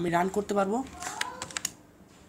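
A few keystrokes on a computer keyboard, clicking about a second in, right after a brief bit of speech.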